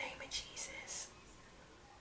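A woman's quiet, breathy laughter: three or four short whispery puffs of breath in the first second, then near silence.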